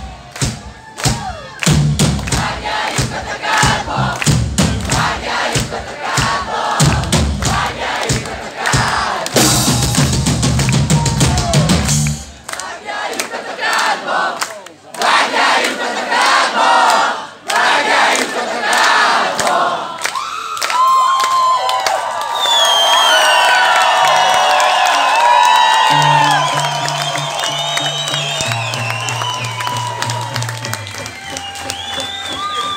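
Live rock band ending a song with loud drum hits over bass and guitar; about twelve seconds in the full band drops out, leaving scattered hits, and a crowd cheers, shouts and whistles. Near the end a bass holds low notes under the cheering.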